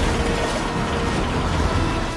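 Tornado wind as film sound design: a loud, dense rush of wind noise with clattering debris over a strong deep rumble.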